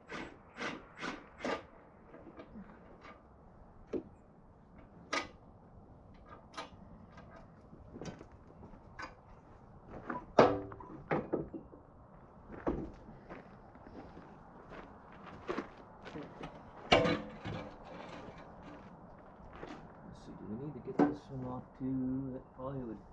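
Scattered clinks and knocks of hand tools and metal parts as a bolted-on step is taken off a tractor, with louder clanks about ten and seventeen seconds in.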